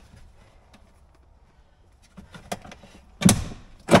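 Plastic dash switch plate of a Can-Am Commander being pried at by hand: a few light clicks, then one loud plastic knock about three seconds in as the stuck panel is forced. The panel is tough to come off.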